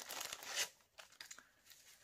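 Clear plastic bag crinkling as a stack of small paper seed packets is pulled out of it by hand, loudest for the first half-second or so, then dying down to faint rustles.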